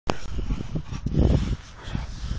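Rottweiler growling while it shakes a tree branch, loudest about a second in.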